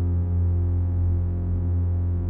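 Music: a held synthesizer chord over a deep, steady bass drone, unchanging throughout.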